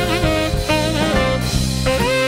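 Saxophone playing a jazz-blues shuffle solo with bent, wavering notes, backed by a rhythm section with drums and electric bass.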